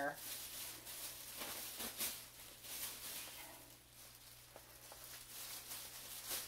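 Rustling and crinkling of a bag as several balls of yarn, all jumbled together, are pulled out of it, with a few sharper crackles along the way.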